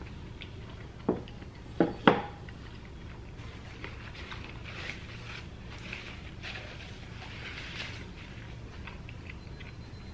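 Three sharp clicks about one to two seconds in, as a metal fork is set down, then a paper napkin rustling as it is handled and unfolded.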